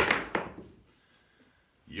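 A pair of dice thrown down a felt craps table: a sharp knock as they land, a second knock about a third of a second later, then a few faint clicks as they tumble to a stop.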